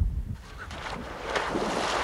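Water splashing as people wade and thrash through shallow water, louder in the second half.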